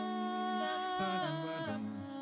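Female vocal group singing a cappella in close harmony, several voices holding sustained chords that shift every half second or so.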